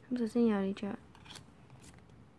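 A woman's voice says a short phrase, then faint clicks and rustles of clear plastic trading cards being handled.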